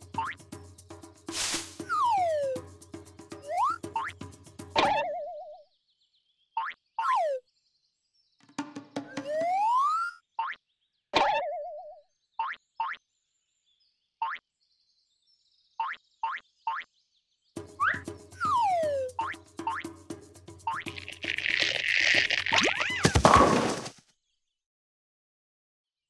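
Cartoon sound effects: slide-whistle-like glides falling and rising, boings and short plinks and pops, over a light music bed that drops out in the middle stretch. Near the end a loud rushing, rustling burst.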